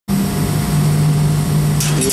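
Steady machine hum with a low droning tone from a running Delta 3015 shuttle-table cutting machine and its auxiliary equipment. A brief hiss comes near the end.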